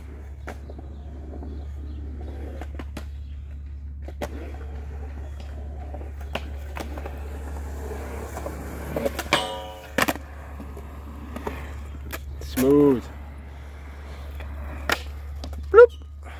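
Skateboard wheels rolling on concrete, with sharp clacks of the board's tail and wheels hitting the pavement every second or two, over a steady low rumble. Short shouts break in near the middle and again just before the end.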